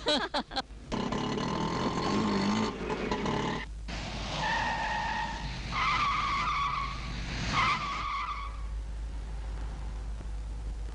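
A car driving fast, then its tyres squealing in three wavering skids, each about a second long.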